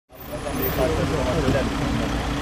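Vehicle engines idling with a steady low rumble, with indistinct voices of people talking close by.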